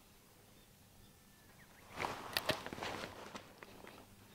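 A quiet first half, then about two seconds in a short cluster of sharp clicks and rustling lasting about a second, from the angler handling his spinning rod and reel as he works a surface lure.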